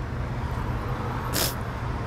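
Steady low rumble of road traffic, with a brief sharp hiss about one and a half seconds in.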